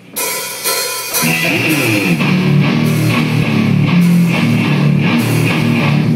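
A live rock band of electric guitar, electric bass and drum kit starting a song and playing loudly. The music starts abruptly and grows fuller and louder about a second in.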